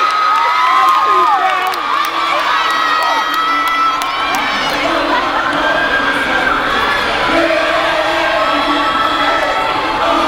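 A large audience cheering and screaming loudly and without pause, with many high-pitched shrieks and whoops overlapping.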